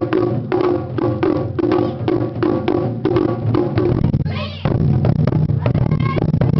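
Japanese taiko ensemble drumming: steady strokes about four a second with a ringing mid-pitched drum tone. Just past four seconds there is a brief break with a high shout, and then the large barrel drums come in with denser, heavier low strokes.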